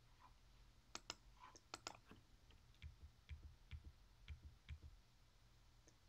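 Faint, irregular keystroke clicks on a computer keyboard as a terminal command is typed.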